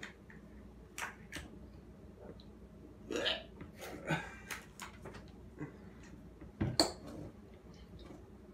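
Sauce squirting and sputtering from a plastic squeeze bottle in several short, burp-like bursts, the loudest near the end, with forks clicking against plates.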